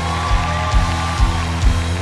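Church worship music: held keyboard chords over a steady bass line, with a few soft percussive hits.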